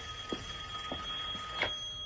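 A steady, high electronic tone, two pitches sounding together, held without a break, with a few soft clicks over it.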